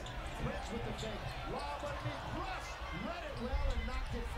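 Sounds of live NBA play on a hardwood court: a basketball bouncing, with arena crowd noise and indistinct voices.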